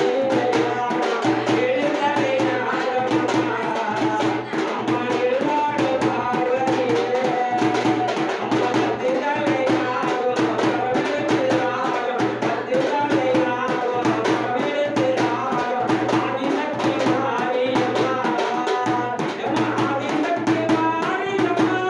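A man singing a devotional chant into a microphone over a large frame drum beaten with a stick in a steady rhythm, about one and a half strokes a second.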